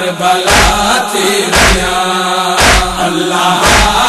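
Saraiki noha: voices chanting a long, held lament line, kept in time by a deep thump about once a second.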